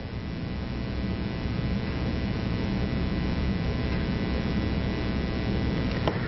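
Steady electrical mains hum with hiss on the recording, a set of faint steady tones over a low, even noise.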